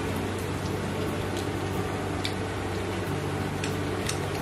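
Oil sizzling in a frying pan: a steady hiss with faint scattered crackles, over a low steady hum.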